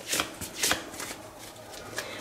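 A deck of Lenormand cards being shuffled by hand: a few short papery swishes, the two loudest in the first second, then fainter.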